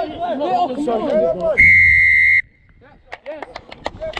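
Referee's whistle blown once, close to the microphone: a single shrill steady blast lasting under a second, about halfway through, after a burst of shouting voices. It stops play at a ruck where a player has gone off his feet.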